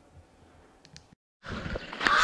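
Faint room tone with two light ticks, broken by a moment of dead silence at an edit. Then outdoor street ambience fades up for the last half second.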